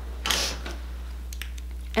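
A short scrape and a few light clicks from a small cosmetics container being handled and opened, over a low steady hum.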